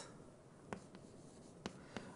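Faint writing on a board, with a few short, light taps as the strokes land.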